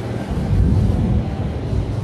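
A low rumble of background noise, swelling about half a second in and staying fairly steady.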